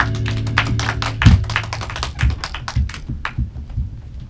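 A band's last chord ringing out and fading over the first second or so, followed by scattered sharp taps and clicks and a few low thumps as the players stop and get up from their instruments.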